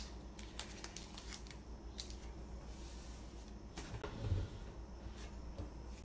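Blue painter's tape being handled: a strip torn from the roll and pressed down onto a plastic stencil, with light rustles and clicks and a soft thump about four seconds in.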